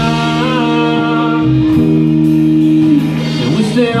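Live country-rock band playing an instrumental passage, with guitars, bass and keyboard holding long sustained chords.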